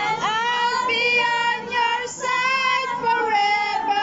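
Several women singing together, holding long, drawn-out notes.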